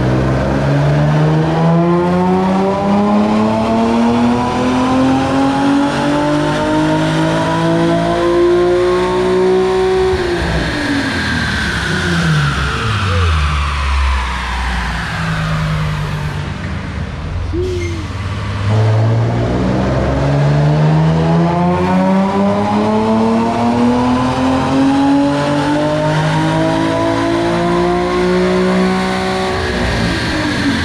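Nissan 350Z's 3.5-litre V6 making two full-throttle pulls on a chassis dyno during tuning: each time the engine note climbs steadily for about ten seconds to high revs, then drops back as the throttle is released. The second pull starts a little past the halfway point.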